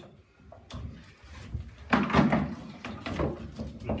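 Handling noise of test leads being changed over on a multifunction tester: plastic plugs and probes clicking and knocking against the meter's case. A single click comes under a second in, and a busier clatter, the loudest part, comes about two seconds in.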